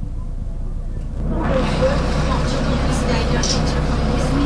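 City bus running with a steady low engine rumble inside the cabin; about a second in, a loud, steady rushing noise sets in, typical of the bus driving through floodwater that is getting inside. Passengers talk over it.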